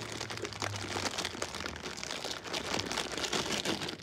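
A clear plastic bag of crackers crinkling continuously as a hand rummages inside it.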